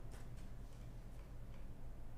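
A few light, irregular clicks and taps from a pen being picked up and handled on a drawing desk, over a low steady hum.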